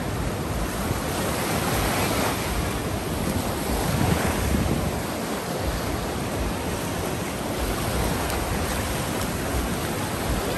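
Atlantic Ocean surf breaking and washing up the beach, a steady rushing wash that swells about two and four seconds in, with wind rumbling on the microphone.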